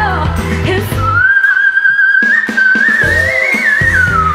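A female pop singer holds one long, very high note, wavering slightly and climbing a little near the end, over live band backing that thins out a second in and comes back at the end. It is a showpiece high note.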